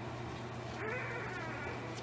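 Four-day-old pit bull puppies squeaking and whimpering while they jostle to nurse, with one louder, wavering cry about a second in. A steady low hum runs underneath.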